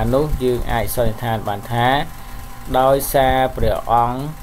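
Only speech: a voice narrating in Khmer, continuous and unbroken by other sounds.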